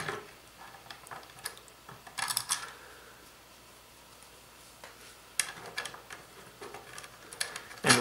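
Small metal clicks and clinks of steel washers and M8 nuts being picked up and slipped onto threaded rods, with a short cluster of clinks a little over two seconds in and scattered clicks in the second half.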